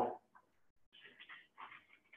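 Chalk writing on a blackboard: faint, short scratches and squeaks, once about half a second in and then several in quick succession from about a second on.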